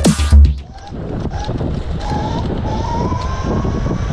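Electronic intro music with heavy bass cuts off about half a second in. Then an electric scooter rides along a street with wind rushing on the microphone, its motor whine rising in pitch as it speeds up.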